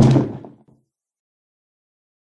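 A single heavy hit, the sound effect for a shove, landing right at the start and dying away within about half a second; then dead silence.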